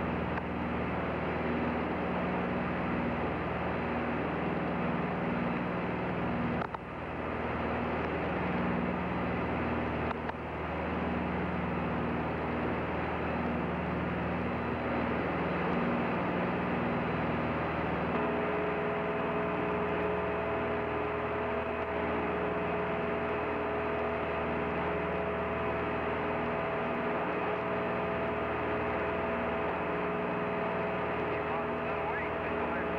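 Steady hiss and hum of an open space-to-ground radio link, with a slow pulsing in the low hum. The hiss dips briefly twice early on, and two steady tones join about two-thirds of the way through.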